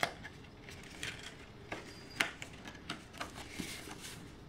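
Sheets of cardstock being handled and laid down on a paper-crafting mat: a handful of light taps and soft paper rustles.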